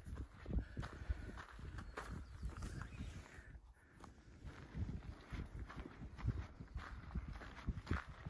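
Footsteps of a hiker on a rocky dirt trail at a walking pace, boots crunching and thudding on gravel and stones, over a low rumble, with a short lull about three and a half seconds in.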